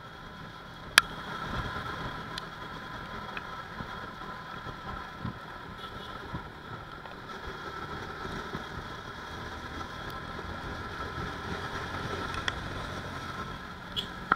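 Motorcycle riding along at steady speed: its engine runs under a steady rush of wind and road noise. A single sharp click about a second in stands out, with a few fainter ticks later.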